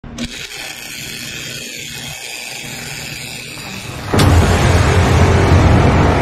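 MIG welder arc crackling with a steady hiss on a steel tube frame joint. About four seconds in, loud intro music cuts in suddenly, heavy in the bass.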